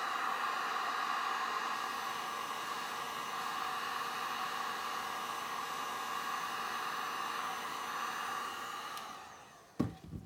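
Handheld heat gun blowing steadily as it pushes poured resin across the board. It is switched off and winds down near the end, followed by a single knock.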